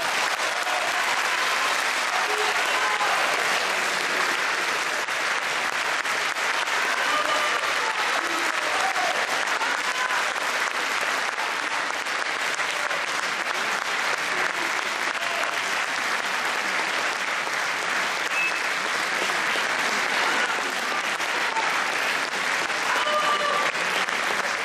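Audience applauding steadily and without a break.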